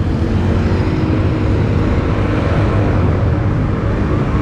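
Steady city road traffic: car engines and tyres passing on a busy multi-lane avenue.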